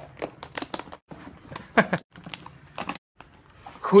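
Metal clasps and latches of a hard makeup case rattling and clicking again and again as someone tries to force it open. The case is stuck and will not open.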